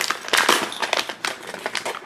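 Foil blind bag crinkling and crackling as it is handled and torn open, with quick irregular clicks, along with light jingling from the metal keyring inside.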